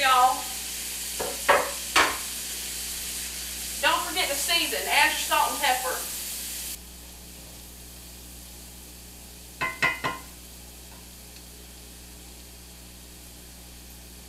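Diced onion, carrots and celery sizzling in hot bacon grease in a cast-iron skillet, with a few sharp knocks of a wooden spatula against the pan. The sizzle drops abruptly to a softer hiss about seven seconds in, and a quick cluster of taps comes near the ten-second mark as the vegetables are stirred.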